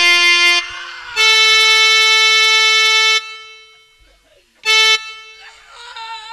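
Harmonium playing long held notes at one steady pitch, each cutting off abruptly: one of about two seconds near the start, then a short one near the end. A faint wavering voice comes in just before the end.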